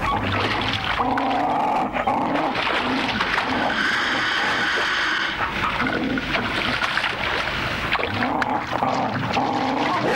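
Dingoes snarling and growling in short bursts as they lunge at a lace monitor, with splashing in shallow water. A higher, drawn-out cry comes about four seconds in and lasts over a second.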